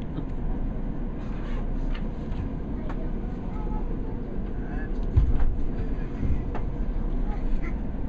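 Steady low rumble inside a passenger train carriage, with faint voices over it. A short low thump about five seconds in.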